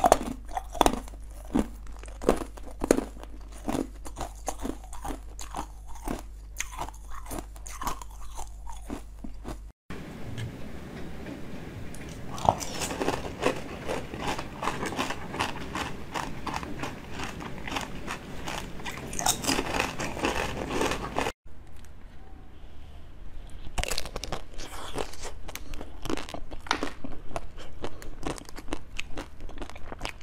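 Close-up crunching of frozen ice being bitten and chewed: rapid sharp cracks and crunches, from coloured ice blocks and ice balls frozen with basil seeds. Two brief drops to silence, about ten and twenty-one seconds in, break it into three runs of biting.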